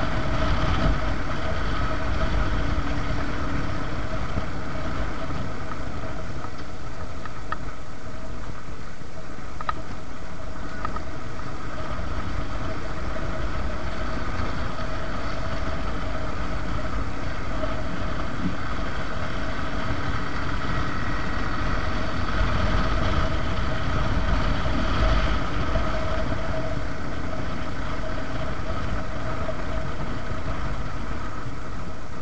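Suzuki Gixxer's single-cylinder four-stroke engine running steadily while the motorcycle cruises at about 40–50 km/h, with wind rushing over the microphone and a few faint clicks a third of the way through.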